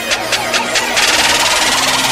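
Electronic intro sting: a rapid, stuttering beat of about six or seven hits a second, giving way about a second in to a loud rushing noise swell.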